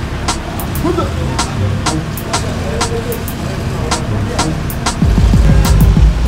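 Repeated sharp lashing strikes of a beating, about two a second, over a low film music score, with a man's brief cries. A loud low surge comes in near the end.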